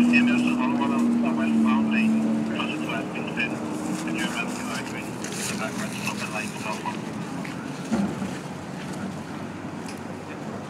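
Indistinct voices of people standing around outdoors over a steady low hum that fades out about four seconds in, with a single short knock near the end.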